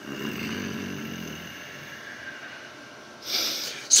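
A man's long, rough, snore-like exhalation that fades over about three seconds, followed near the end by a sharp, loud intake of breath.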